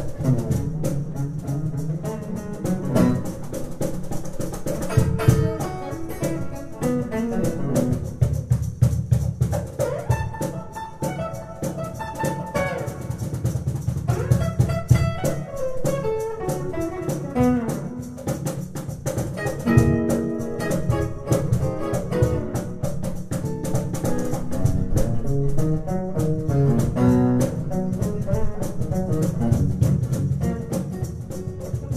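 Steel-string acoustic guitar played fingerstyle in a fast run of plucked melody notes, with a cajón keeping a steady beat underneath: an instrumental passage with no singing.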